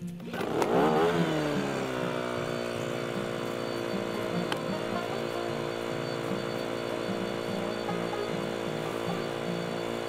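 A small chainsaw starts up about half a second in, its pitch sweeping and then settling, and runs on at one steady, even pitch. Background music plays underneath.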